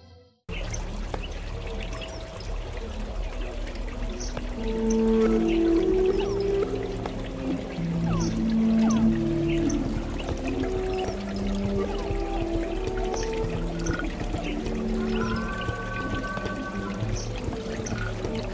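A pitched chord cuts off, and after a brief silence running water trickles steadily, with faint short high ticks. Slow, held low notes overlap above the water, and higher held notes join near the end.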